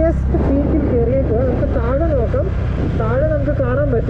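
A fairly high voice singing a wavering, continuous melody, with short breaks, over a steady low hum.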